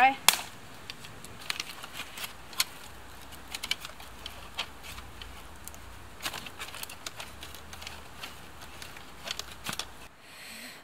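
Dry dead sticks snapping and cracking by hand as fine kindling is broken up: irregular sharp cracks, the loudest near the start.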